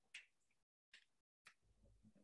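Near silence, broken by a faint short click just after the start and two fainter ticks later on.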